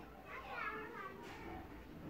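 Faint, high-pitched voices in the background, loudest about half a second in.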